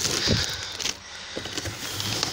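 Cardboard box and brown paper packing being pulled and torn open by hand, with irregular rustling, scraping and crackling.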